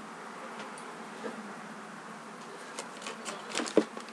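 Small clicks, knocks and rustles of makeup items being moved about while someone searches for a lost liquid eyeliner, mostly in the second half. A steady low hiss from the webcam microphone sits under them.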